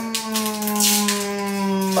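A woman's voice holding one long, steady hum in the middle of a word, its pitch sinking slightly.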